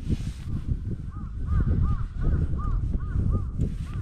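Wind rumbling on the microphone, with a quick run of short, squeaky, arched chirps, about three a second, starting about a second in and stopping near the end.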